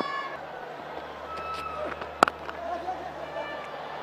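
A cricket bat striking the ball: one sharp crack about two seconds in, over faint stadium background.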